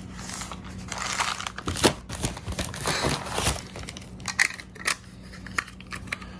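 Plastic packaging bag crinkling and tearing as it is opened, in several rustles over the first three seconds or so, followed by a few light clicks of handling.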